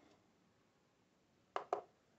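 Two short sharp sounds, about a fifth of a second apart near the end, from the buttons of an SF-400 digital kitchen scale being pressed as its reading is zeroed; otherwise quiet room.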